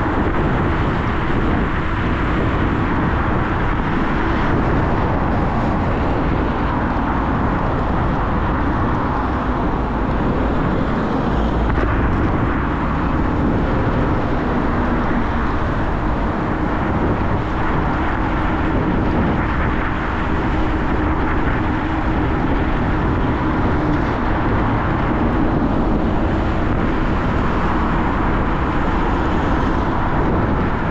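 Steady wind rush and road noise from a Dualtron Thunder 3 electric scooter ridden at speed, around 60 km/h, with the wind rumbling unevenly on the microphone.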